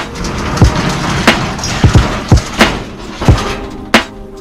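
Corrugated steel roll-up door of a storage unit being pulled open, a long metal rattle as it rolls up, easing off in the last second or so.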